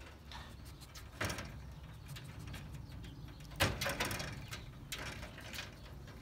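Scattered clicks and knocks of a wire-mesh ferret cage being handled, with a sharper knock about a second in and the loudest about three and a half seconds in.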